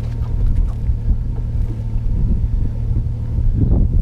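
Bass boat's outboard engine idling, a steady low rumble.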